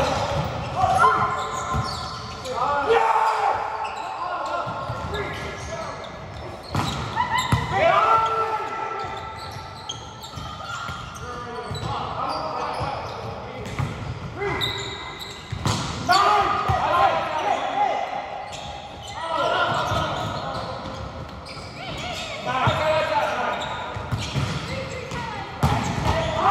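Volleyball players' voices calling out indistinctly across a large gym during a rally, broken every few seconds by sharp thuds of the ball being hit and landing on the hard court.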